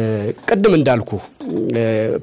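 Only speech: a man talking.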